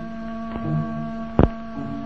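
A steady hum of several held tones, with a single sharp click about one and a half seconds in.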